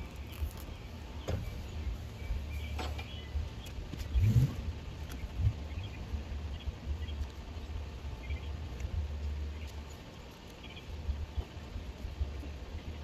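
Garden ambience with a steady low rumble of wind on the microphone and faint bird chirps, broken by a few sharp clicks of hand pruning shears snipping onion stalks. A brief, louder low thud with a short rising sweep comes about four seconds in.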